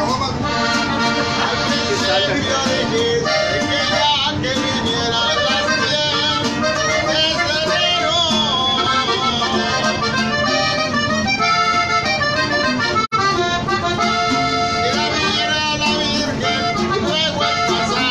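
Live norteño music: a button accordion leads over a strummed twelve-string guitar, with a man singing. The sound drops out for an instant about 13 seconds in.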